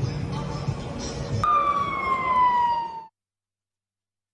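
Emergency-vehicle siren cutting in abruptly about a second and a half in, a single clear tone falling slowly in pitch, over muffled voices and background noise. All sound cuts off suddenly about three seconds in.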